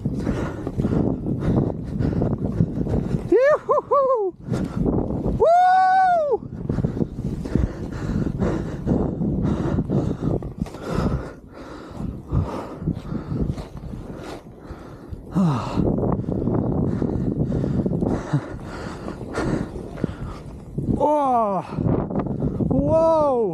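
Skis running through deep powder snow: a continuous rushing, scraping hiss with many short crunches, mixed with wind buffeting the camera microphone. A skier's whoops rise and fall over it twice, about four and six seconds in, and again at the very end.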